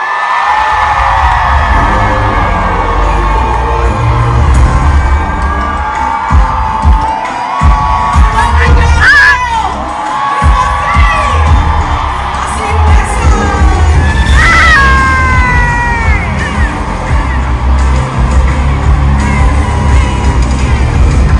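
Live R&B concert heard from within the audience: a singer on a microphone over a heavy bass beat, with the crowd cheering and screaming along. Loud high-pitched shrieks stand out about nine seconds in and again about fourteen seconds in.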